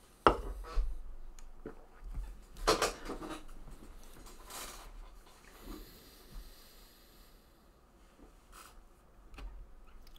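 A sharp knock of a hard object on a desk, then a weaker one just after, followed by scattered rustling and handling noises.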